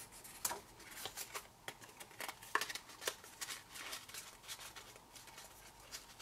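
Faint rustling of a strip of patterned paper being handled and wrapped around a small cardstock box, a string of short, irregular scrapes and light taps.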